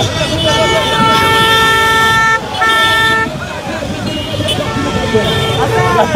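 A vehicle horn honking: one long blast of about two seconds starting about half a second in, a shorter blast right after it, and fainter short toots near the end, over street noise.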